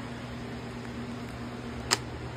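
Steady low electrical hum of the room, with a single sharp click just before the end.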